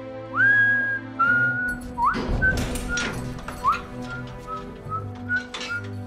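A slow whistled tune of held notes, each note sliding up into pitch, over a low sustained musical drone. A few percussive hits come in, the largest about two seconds in.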